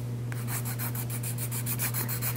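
Nail file rasping against a hardened dip-powder nail in quick, even back-and-forth strokes, shaping it. A steady low hum runs underneath.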